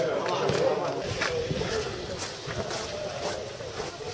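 Indistinct voices of players and spectators at an outdoor football match, with a few scattered knocks.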